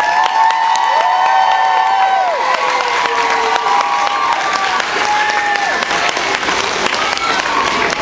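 A hall full of children clapping and cheering, with long, high-pitched held shouts over the clapping.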